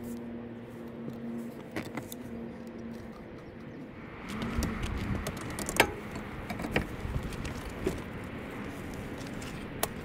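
Scattered handling clicks and knocks as a new evaporative cooler motor is set onto its metal mounting bracket, with about four sharp ones in the second half. They sit over steady outdoor background noise that grows louder about four seconds in.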